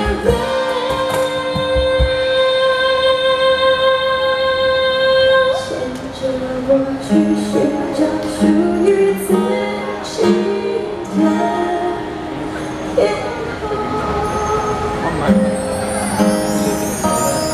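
Live Mandarin pop song: women singing over instrumental accompaniment. A long note is held for about the first five seconds, then the melody moves through shorter notes.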